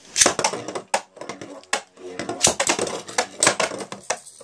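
Beyblade launch and battle: a ripcord zips through the launcher, then the spinning tops clash against each other and the plastic stadium walls in a rapid, irregular run of sharp clicks and knocks, until one is knocked out of the stadium.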